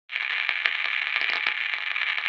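Crackling radio-static sound effect: a steady, thin hiss with scattered sharp crackles through it.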